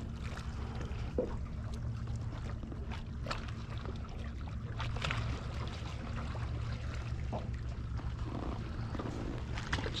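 Small waves lapping against a plastic kayak hull over a steady low rumble of water and wind, with a few light scattered taps and clicks.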